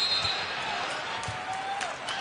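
A basketball bouncing on a hardwood court, a few separate thuds, over the steady background noise of an arena crowd.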